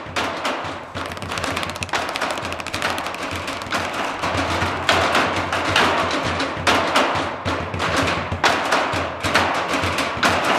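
Percussion ensemble beating sticks on steel oil barrels, a dense, fast rhythm of sharp metallic hits that gets louder about halfway through.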